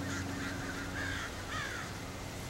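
A bird calling several times in short calls, the last one falling in pitch near the end, over a steady low hum.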